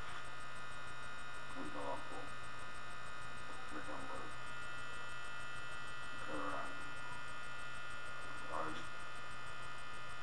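Steady electrical mains hum and buzz from the recording, with a faint short sound about every two seconds.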